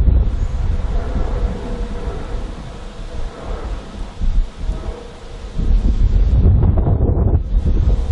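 Thunder from a lightning bolt that struck an airliner: a deep rumble, loud at first, easing off, then swelling again about halfway through.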